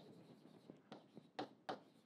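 Faint sounds of a pen writing on a board, with a few short ticks as the tip strikes the surface, the clearest about a second in and around a second and a half.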